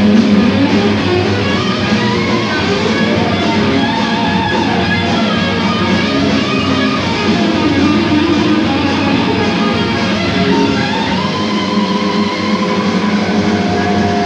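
Heavy metal band playing live, loud and steady, with distorted electric guitar to the fore.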